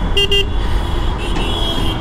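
Two short vehicle-horn toots in quick succession, over the steady low rumble of a motorcycle being ridden along the road.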